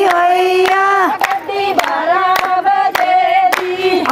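Women singing a Punjabi boli in long held notes over steady giddha hand-clapping, about two claps a second.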